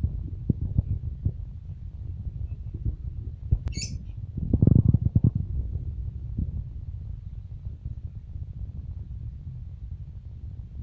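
A steady low rumble that swells louder for about a second near the middle. Just before the swell comes one brief, high chirp from a small caged parrot.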